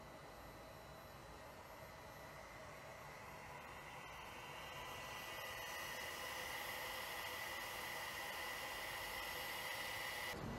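Hyundai NEXO fuel cell's air intake drawing air through a ribbed hose from a balloon: a steady airy hiss with a high whine. Both grow louder from about halfway through.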